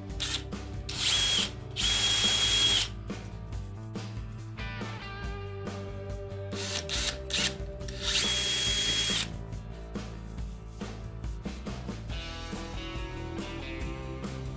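Electric drill with a thin twist bit boring small pilot holes into oak. There are three short runs of motor whine and bit cutting: two close together about a second in and one about eight seconds in, over background music.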